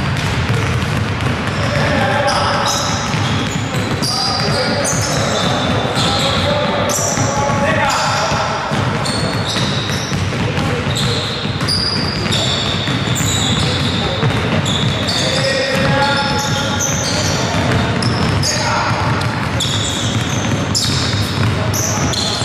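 Several basketballs being dribbled at once on a hardwood gym floor, with voices mixed in.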